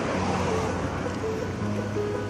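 Steady street and traffic noise with faint background music.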